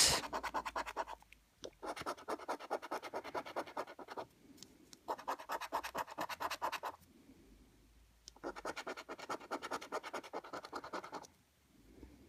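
A coin scratching the coating off a paper scratchcard in rapid back-and-forth strokes, in four spells with short pauses between.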